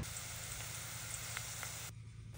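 Thinly sliced green onions sizzling gently in olive oil at a light simmer, poaching to make scallion oil: a faint, steady hiss with a couple of tiny pops. It cuts off abruptly just before the end.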